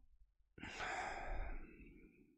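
A person's long, unvoiced breath, starting about half a second in and fading out at the end.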